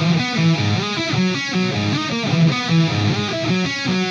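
Electric guitar (a Jackson) playing a metal riff in 3/4 time, the notes joined with slides rather than tremolo-picked.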